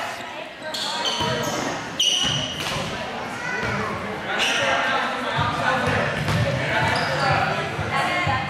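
Players and spectators chattering, echoing in a gymnasium, with a ball bouncing on the court floor and a few short high squeaks about one to two seconds in.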